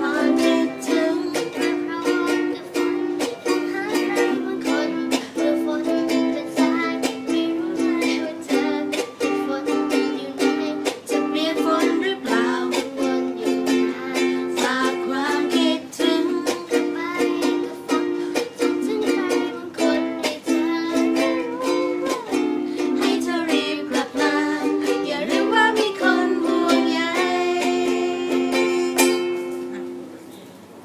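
Two ukuleles strummed together in a steady rhythm, with voices singing along.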